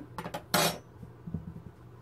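A metal ruler being picked up and set down on the table: a few light clicks, one louder clatter about half a second in, then faint taps.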